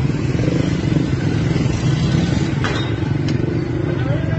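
Steady street noise of motor vehicle engines and traffic rumble, with two short sharp cracks in the second half.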